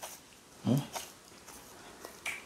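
A short, low closed-mouth "mm-hmm" hum from a person eating, about two-thirds of a second in, with a small click at the very start. Otherwise it is quiet.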